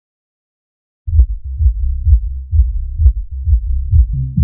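Electronic dance track starting about a second in with a deep, pulsing bass line and a steady beat of about two pulses a second, nothing yet above the low end.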